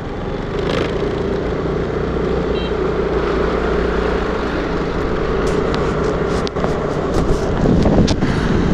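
Honda scooter's small single-cylinder engine running as the scooter pulls away and picks up speed, its hum steadily growing louder. A few short knocks come near the end.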